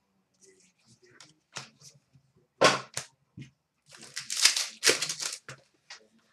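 Trading cards and foil pack wrappers being handled: a run of short rustles and crinkles, sparse at first and busiest in the second half.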